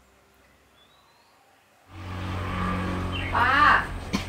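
Near silence for about two seconds, then a steady low hum of room tone comes in. Near the end an older woman coughs once into her hand, a short loud burst.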